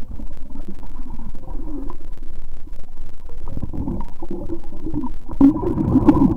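Muffled underwater rumbling and gurgling of water moving around a camera held under the surface by a swimmer. It grows louder about three and a half seconds in and is loudest near the end.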